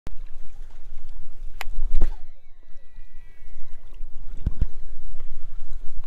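Baitcasting reel cast: a click and a rod swish about two seconds in, then the spool's thin whine falling in pitch as line pays out, and two clicks near the end. The cast ends in a backlash, or bird's nest, on the spool. A steady low wind rumble on the microphone lies under it all.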